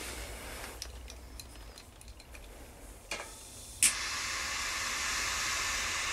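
Coney triple-jet butane cigar lighter: a click about three seconds in, then a sharp click as it lights just before four seconds, followed by the steady hiss of its jet flames.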